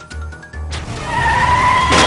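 Cartoon sound effect of a car's tyres squealing as it peels away, starting suddenly about three quarters of a second in and growing louder. Background music with a steady low beat plays underneath.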